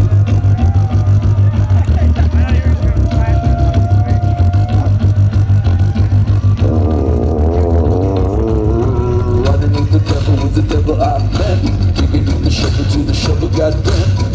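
Live looped solo music on a homemade upright steel-pipe instrument (the Magic Pipe): a deep pulsing bass line under wavering, warbling tones. A fast beat of percussive hits comes in about nine and a half seconds in.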